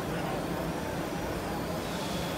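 Steady exhibition-hall background noise, an even din of machines and crowd, with a faint wavering high whine running through it.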